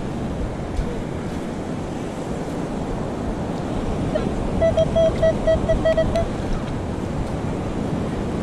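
Steady surf and wind on the microphone, and about halfway through, a Minelab Equinox metal detector gives a quick run of short, same-pitched beeps as its coil passes over a buried metal target.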